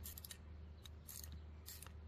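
Faint clicking of a 17 mm ratcheting wrench as it tightens a threaded hose fitting on an aluminium oil catch can, in a few short runs of clicks.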